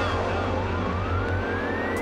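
Electronic dance music from a DJ mix: a steady deep bass under a single synth tone that rises slowly and evenly, a siren-like riser building up the track.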